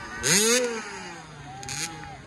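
Small dirt bike's engine revving up sharply about a quarter second in, then dropping off slowly as the throttle is eased.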